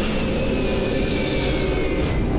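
Cartoon energy-blast sound effect: a loud, steady, jet-like rushing with faint held tones underneath.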